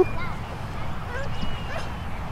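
Outdoor ambience: a steady low rumble with a few faint, short distant calls scattered through it.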